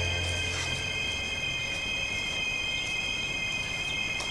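Low, tense background music fades out about a second in. Faint rustles of paper being handled follow, over a steady high-pitched whine.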